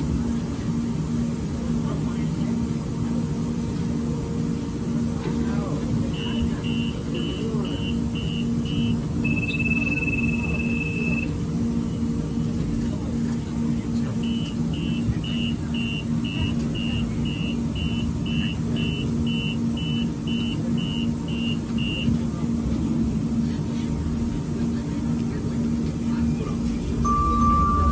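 Voices of a crowd inside a stopped Siemens S200 light-rail car at an underground platform. Over them the train's door warning beeps high and quick, about two beeps a second. There are six beeps and a held tone about six seconds in, then a longer run of about sixteen beeps from about fourteen seconds in. A low tone pulses steadily underneath.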